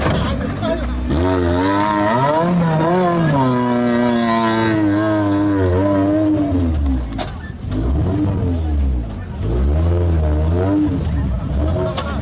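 Maruti Gypsy's engine revving hard under load on a dirt climb, its pitch rising and falling with the throttle. It eases off about seven seconds in, then revs up again.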